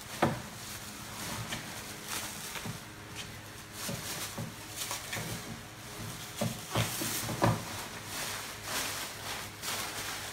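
Handling noises around a metal machine tool: several sharp knocks and clunks, loudest about a quarter second in and again around two-thirds of the way through, over a soft rustle of plastic packing.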